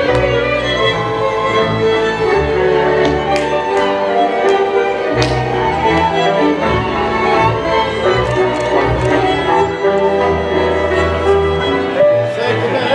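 Slovácko cimbalom band, led by violins over a double bass, playing verbuňk dance music. A few sharp knocks cut through the strings around the middle.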